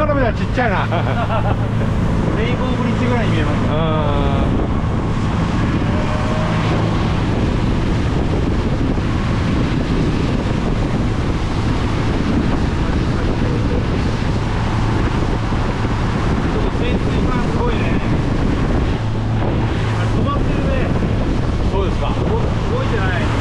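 A motorboat under way: a steady engine hum with wind buffeting the microphone and water noise from the hull.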